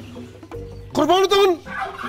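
A man's voice: one short, drawn-out, wavering vocal call about a second in.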